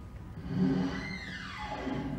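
A falling sweep in the stage show's score or sound effects: one high tone glides steadily down to a low pitch over about a second, over low sustained notes.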